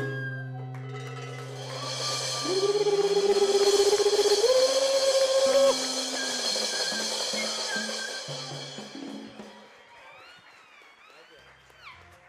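A live charanga salsa band ends a song: a long held final chord, with a voice rising to a sustained high note over ringing cymbals, loudest a few seconds in and fading out after about six seconds into a few scattered short notes. Voices follow quietly near the end.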